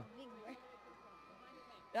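A lull between amplified announcements: faint distant voices and a faint steady tone, with a man's voice starting again right at the end.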